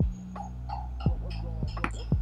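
Low steady hum, with a few soft clicks.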